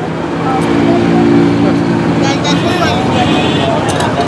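Street traffic: a motor vehicle's engine drones steadily for about two and a half seconds and then fades, with voices over it.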